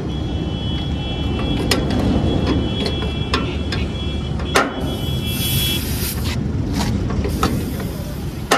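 Scattered sharp metal clicks and clinks of a wrench working the nuts holding a small truck's rear light, over a steady low outdoor rumble. A faint steady high whine runs through the first part and stops about six seconds in.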